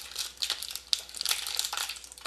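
A candy wrapper crinkling in irregular crackles as a small jelly candy is unwrapped by hand.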